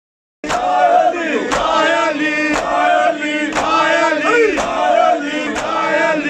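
Large group of men chanting a noha lament in unison, with synchronized matam chest-beating: a sharp slap from many hands together about once a second, keeping time with the chant. It starts abruptly just under half a second in.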